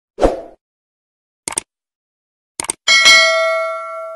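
Subscribe-button animation sound effects: a short pop, two quick double clicks like a mouse button, then a bright notification-bell ding about three seconds in that rings out and fades.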